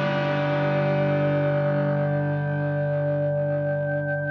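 An overdriven electric guitar chord through a cranked JTM45-style Marshall valve amp and a 2x12 cabinet loaded with Celestion Alnico Cream speakers, ringing out and slowly fading. From about halfway a single high note swells up as the guitar, held toward the amp, starts to feed back.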